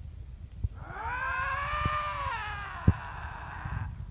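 A Canada lynx calling: one long, eerie wailing call of about three seconds that rises and then falls in pitch. A few short low knocks sound under it, the sharpest near the end of the call.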